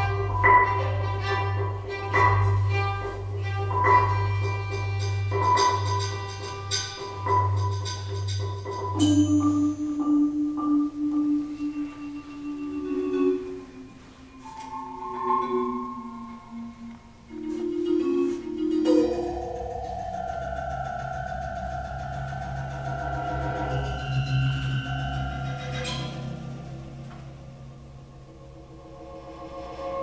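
Contemporary chamber music for marimba, violin and electronics. Rapid repeated marimba strokes ring over a low sustained electronic drone; about nine seconds in this gives way to quieter held and sliding violin notes, and from about nineteen seconds a steady held electronic chord sounds under the violin.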